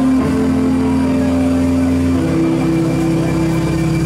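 Live rock band playing an instrumental passage with electric guitar and keyboards, recorded from the crowd: loud held low notes that move to a new pitch about every two seconds, with no singing.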